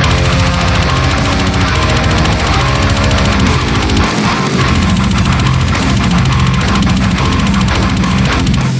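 Heavy metal instrumental: a distorted eight-string electric guitar tuned to drop F plays a low, fast, chugging riff.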